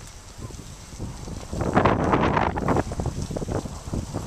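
Wind noise on the microphone while cycling, with bicycle tyres rolling and crunching on a gravel path. The noise swells into a louder rush from about one and a half seconds in to about three seconds in.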